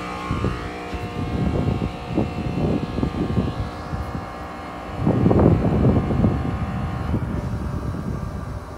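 Wind buffeting the microphone in irregular low gusts, strongest about five seconds in, over the steady hum of a rooftop dehumidifier unit's running compressor. The unit's condenser fans are stopped because their VFD is not driving them.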